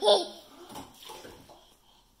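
Ten-month-old baby laughing: a loud, high squeal of laughter right at the start, then quieter breathy giggling that fades away.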